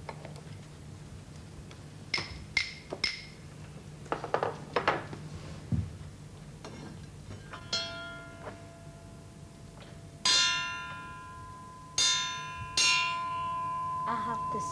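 Metal percussion being tried out to imitate a chiming clock: a few light taps and knocks on metal tubes and wood, then a struck triangle ringing out loudly three times near the end, each ring lasting.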